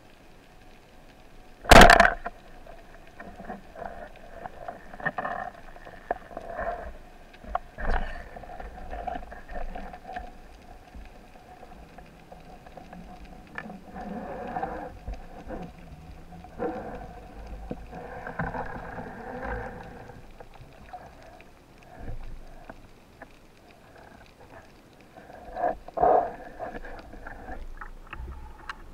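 Band-powered speargun firing underwater: one sharp, loud crack about two seconds in. After it come faint knocks, clatter and water noise as the shaft and line are handled, with another louder knock near the end.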